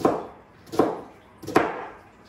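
Kitchen knife chopping through an onion onto a plastic cutting board: three sharp chops about three-quarters of a second apart.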